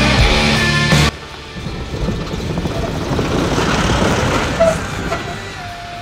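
Background rock music cuts off about a second in, leaving a 4WD driving up the gravel forest track and past over the timber bridge: engine and tyre noise building to a peak about halfway through, then fading away.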